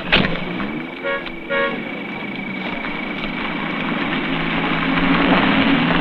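A car horn gives two short toots about half a second apart, just after a sharp knock at the start. A car engine runs throughout and grows louder toward the end.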